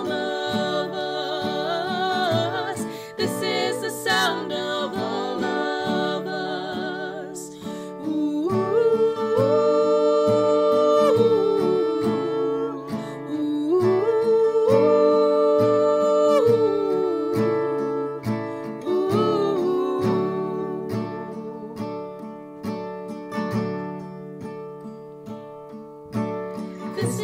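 Acoustic guitar strummed with several voices singing in harmony. The voices hold two long notes in the middle, and the music grows quieter near the end.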